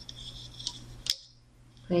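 Rubber loom bands being stretched and slipped onto plastic loom pegs by hand: a faint rubbing with two small clicks about halfway through, the second the sharper.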